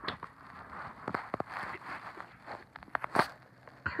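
Scattered soft clicks, knocks and rustles from a handheld phone being moved about close to the microphone, with one sharper knock about three seconds in.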